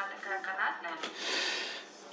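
Faint speech in the background, then about a second in a short breathy hiss, like an exhale close to the microphone.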